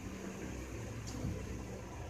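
Quiet indoor room tone: a low steady hum with faint rustling and no speech.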